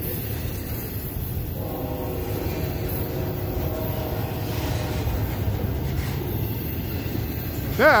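Freight train's cars rolling past close by: a steady rumble of steel wheels on the rail, with a faint steady ringing tone over it for a few seconds in the middle.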